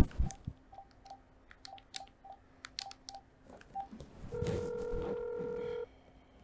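Phone handset keypad beeping as a number is dialed: about ten short beeps at one pitch with soft button clicks. A little after four seconds in comes a steady ringing tone about a second and a half long, then it cuts off.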